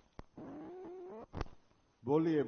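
Podium microphone being handled, giving two sharp clicks about a second apart. Between them is a short, soft hum of a man's voice lasting about a second.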